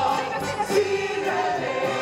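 Stage musical ensemble singing with accompaniment, the voices holding long, steady notes.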